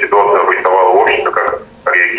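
Speech only: a voice that sounds thin and narrow, like speech over a telephone line.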